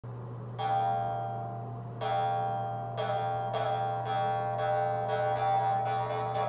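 Jaw harp played by mouth in a bare, empty room: a twang about half a second in, then more plucks a second or so apart that come quicker toward the end, each ringing on as a steady drone with a bright overtone held above it.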